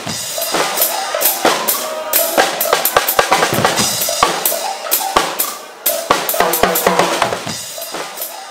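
Lively percussion-heavy band music: fast, dense snare and bass-drum hits with a melody line held over them.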